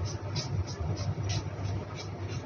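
Paintbrush strokes on a plastic toy revolver: short, separate scratchy brushing sounds, roughly three a second, over a steady low background hum.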